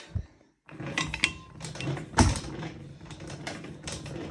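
Leg-split stretching machine being cranked by its hand wheel, the mechanism clicking and knocking irregularly, with one loud knock about two seconds in, as the leg arms are spread wider.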